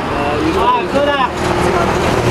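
Indistinct voices talking briefly over a steady low hum of nearby road traffic.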